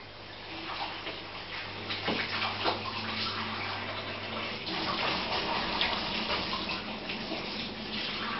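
Aquarium water bubbling and splashing at the surface, an uneven trickling noise that builds up in the first second. A steady low hum runs underneath and fades out about halfway through.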